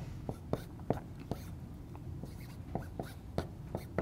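Dry-erase marker writing on a whiteboard: a run of short, irregular taps and strokes as the symbols are written out.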